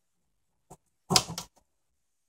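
A faint click, then about a second in a short, louder rattle of several knocks lasting under half a second, as the clean-out door on the dirt separator of a 1925 Spencer turbine cleaner is unlatched from its spring-loaded catches and swung open.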